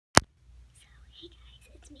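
A single sharp click right at the start, then a girl's faint whispered speech.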